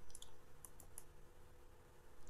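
Faint computer mouse button clicks, a handful of short clicks within the first second, over a low steady hum.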